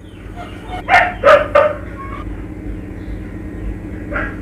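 A steady low drone in the background soundtrack, with three short, sharp sound-effect hits close together about a second in.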